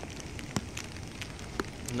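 Steady rain noise, with a few sharp ticks of drops striking close by.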